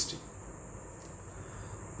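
Faint steady high-pitched tone held without a break over low room hiss.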